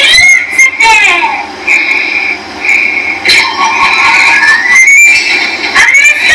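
Cartoon soundtrack played through a TV speaker: a voice in the first second, then a string of short, high, held tones and a rising whistle-like glide about five seconds in.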